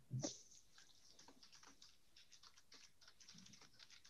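Faint typing on a computer keyboard: an irregular run of light key clicks.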